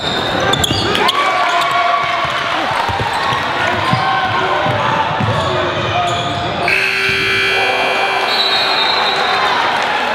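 Basketball game in a gym with a live, echoing room sound: players and crowd shouting while the ball bounces on the hardwood. About two-thirds of the way through a steady held tone starts and carries on under the voices.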